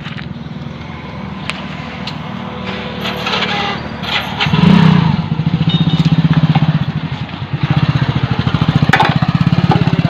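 A small motorcycle engine running close by. It comes in loudly about halfway through and then runs steadily at a low, evenly pulsing hum, easing briefly before picking up again. A sharp click is heard near the end.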